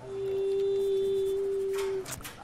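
A single steady pure tone at one mid pitch, held without wavering for about two seconds. It swells in at the start and cuts off sharply at the end.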